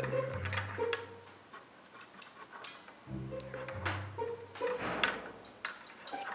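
Background music with a low plucked bass line that repeats about every three seconds, over scattered light clicks of a plastic zip tie and drive sled being handled.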